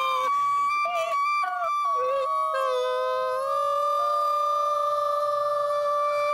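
Concert flute and a woman's singing voice in slow improvised music. The pitches move for the first few seconds, then settle into one long held note that continues to the end.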